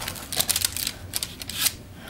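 Knife cutting through a slab of brownie on baking paper: a quick run of small clicks and scrapes as the blade works through the crust.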